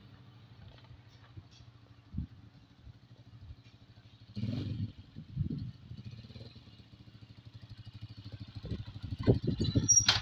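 Small motorcycle engine running as the bike rides up and approaches, growing louder and more throbbing over the last couple of seconds as it pulls in close.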